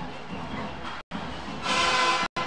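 Arena ambience of crowd noise, with a loud horn-like tone near the end, and the sound dropping out completely for a moment about a second in.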